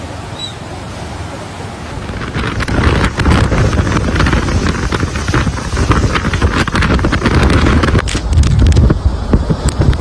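Fast floodwater rushing steadily. About two and a half seconds in it gives way to much louder, gusting wind from a tornado, buffeting the microphone with crackling bursts.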